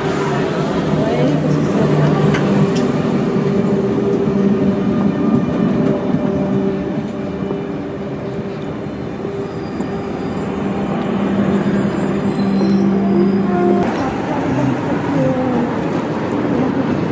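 Double-deck electric commuter train running in along a station platform, with a steady low hum of its motors over rumbling wheels and thin high squeals now and then. The train sound gives way to different noise about two seconds before the end.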